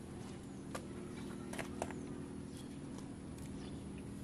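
A few light clicks and snaps from hands picking among tomato plants, over a steady low hum.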